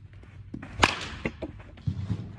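A baseball bat hitting a ball in batting practice: one sharp crack a little under a second in, followed by a few softer knocks and a low thump near the end.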